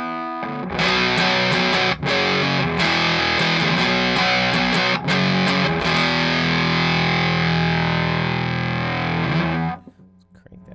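Nash T-57 Telecaster played through a Walrus Audio Jupiter fuzz pedal, with its fuzz turned up, into a Morgan RCA35 amp. Loud fuzzed chords are strummed with a couple of brief breaks, then one chord is left to ring for a few seconds and is cut off suddenly just before the end.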